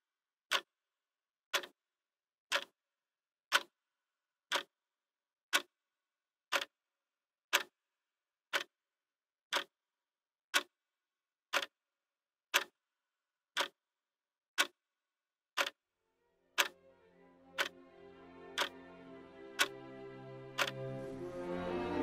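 A clock ticking evenly, one tick a second. About sixteen seconds in, music fades in under the ticks and grows steadily louder; the ticking stops shortly before the end.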